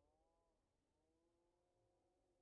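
Near silence, with only a very faint, distant voice.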